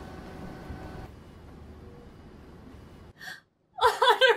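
Steady low room hum with faint steady tones, which cuts off suddenly about three seconds in. Near the end, a woman's voice gasps and whimpers.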